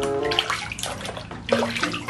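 Water sloshing and splashing irregularly in a basin as a hand swishes it around, washing a plastic toy dinosaur.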